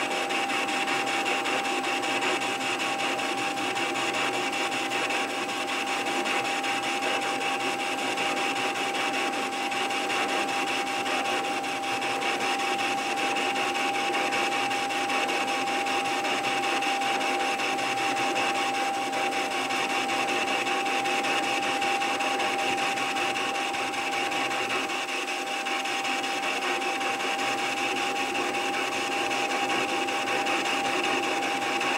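Metal lathe running steadily under a roughing cut on a cast iron engine column, a constant motor and gear whine over the hiss of the cut.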